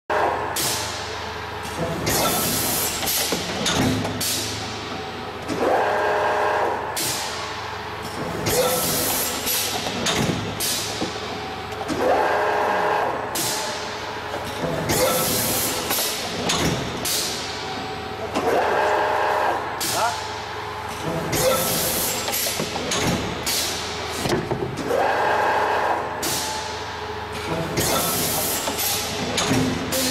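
Injection moulding machine cycling a two-cavity thin-wall cup mould, repeating about every six and a half seconds. Each cycle has several sharp hisses of compressed air, as on air-ejected cup moulds, and a brief steady machine whine lasting about a second.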